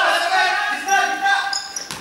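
Basketball being dribbled on an indoor sports-hall floor during play, with a sharp bounce near the end. Voices are calling out, echoing in the hall.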